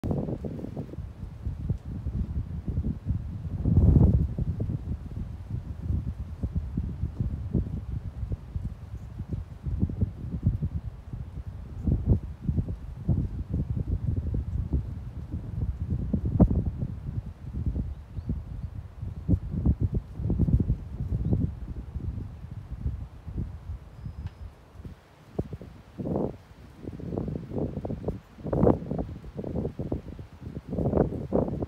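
Wind buffeting the microphone in uneven gusts, loudest about four seconds in.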